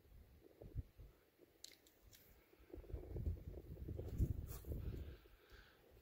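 Faint handling noise: an irregular low rumbling and rubbing in the middle of the stretch, with a few soft clicks near two seconds in, as the hand moves the shrub's branches and flower close to the microphone.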